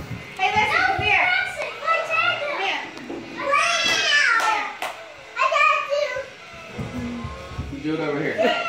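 Young children shouting and squealing in play, high-pitched voices in several bursts without clear words.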